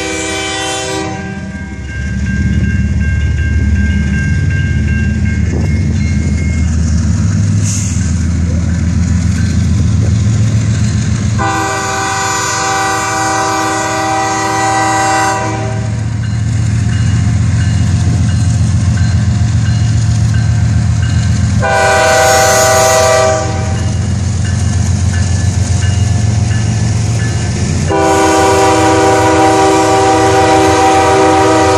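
Locomotive air horn of a Norfolk Southern GE ES40DC, loud, sounding the grade-crossing pattern. A long blast ends about a second in, then come a second long blast, a short one and a final long blast near the end. Under it runs the deep rumble of the approaching diesel locomotives, the ES40DC leading and a CEFX AC4400CW trailing, growing louder as they near.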